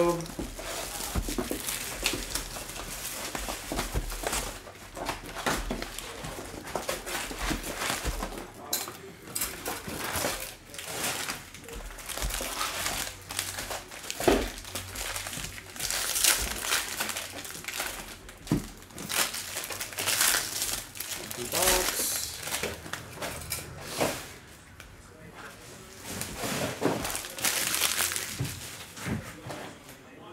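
Plastic shrink wrap and wrapped trading-card packs crinkling and rustling in bursts as a box of baseball cards is torn open and its packs handled.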